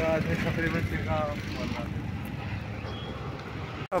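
Steady low outdoor rumble beside a road, with a person's voice faintly heard in the first second and a half.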